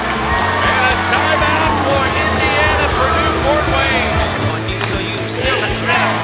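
Music with a steady, stepping bass line, mixed with indistinct voices.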